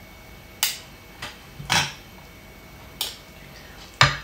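Metal fork and spoon clicking against a dish four times at uneven intervals while food is scooped, one click with a softer thump under it.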